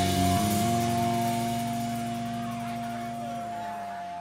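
A live rock band's last chord ringing out at the end of a song, dying away over about three seconds, with a steady higher tone carrying on underneath. Heard through the in-ear monitor mix.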